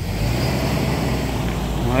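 A motor vehicle running close by: a steady engine rumble with road noise that comes up suddenly at the start and holds, under a short spoken word near the end.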